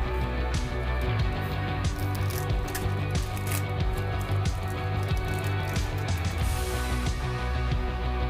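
Background music plays throughout, with short crackles of a foil trading-card pack being torn open and cards being handled over it.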